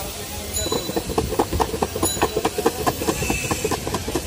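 Black plums (kalo jam) shaken hard in a closed plastic jar to toss them in spice mix, the fruit knocking against the jar walls in a fast, even rhythm of about five or six strokes a second, starting under a second in.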